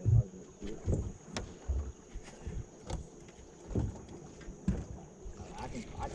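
River water slapping and knocking against an aluminum jon boat's hull in irregular low knocks about once a second, with a few faint clicks from a spinning reel being worked.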